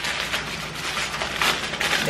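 Clear plastic packaging crinkling as it is handled and pulled open, a dense run of small crackles.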